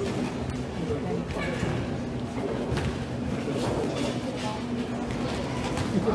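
Indistinct voices of people talking and calling out in a sports hall, with a few short knocks.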